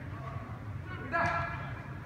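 Players' shouts echoing in a large indoor sports hall: a faint call early on, then a louder one about a second in, over the hall's steady low rumble.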